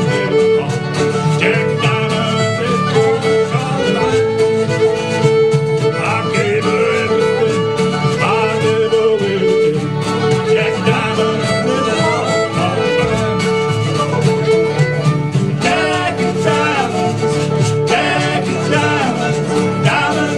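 Live skiffle band playing an instrumental break: a fiddle carries the melody over strummed acoustic guitar, banjo and mandolin, with a bass underneath.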